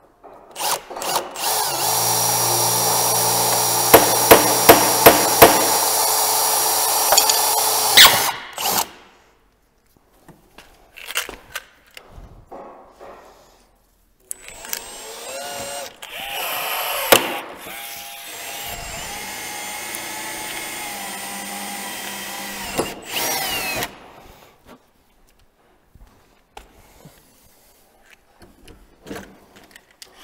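Cordless drill boring holes for the rivets of the snowmobile bumper's hood-mount bracket: a loud run of about seven seconds with several sharp knocks partway through, then after a pause a second, quieter run of about nine seconds whose pitch wavers.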